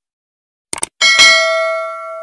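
A mouse-click sound effect, a quick double click, then about a second in a notification-bell ding that strikes and rings on with several clear tones, slowly fading.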